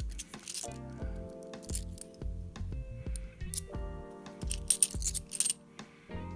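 Background music with a steady beat, over the metallic clinks of 50p coins knocking together as a stack is handled, with a quick run of louder clinks near the end.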